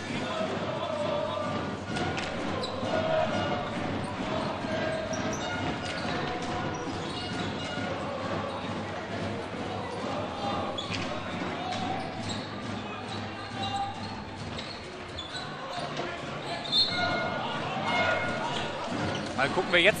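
Indoor hockey in play: irregular sharp clacks of sticks hitting the ball and the ball knocking on the floor and side boards, with voices calling in the background, all echoing in a sports hall.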